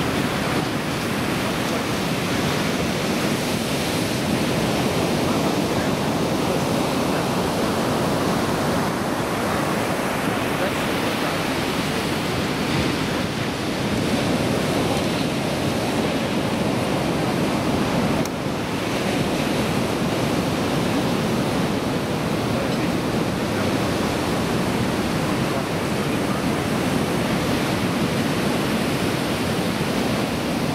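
Heavy surf on a rough, storm-stirred sea: waves breaking and washing through the shallows as a continuous, steady rush of white water.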